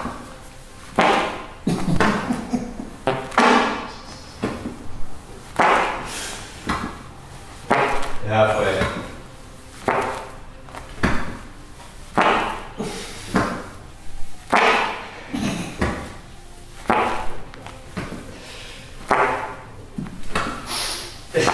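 A man's forceful breaths and grunts of effort, one with each rep of V-up sit-ups, coming about once a second, with a longer strained voiced sound about eight seconds in.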